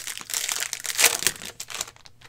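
Cellophane wrapper of a basketball trading-card cello pack crinkling and crackling as it is torn and peeled off by hand. The sharpest crackle comes about a second in, and it dies down near the end as the cards come free.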